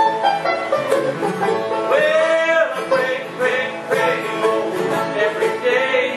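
Bluegrass band playing a blues number: banjo, mandolin, guitar and upright bass together, with a lead line that bends in pitch about two seconds in.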